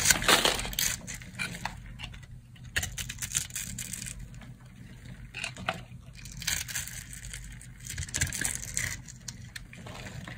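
Dry bar soap being cut with a knife blade, crunching and crackling as small cubes snap off a grid-scored bar. The crunching comes in irregular bursts and is loudest right at the start.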